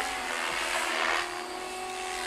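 Goblin 570 electric RC helicopter with a Scorpion brushless motor flying high overhead: a steady, faint hum with a few held tones over a hiss from the motor and rotors.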